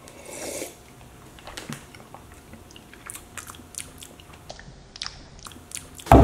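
A person drinking water from a wine glass: a short gulp about half a second in, then faint scattered mouth clicks and swallowing sounds.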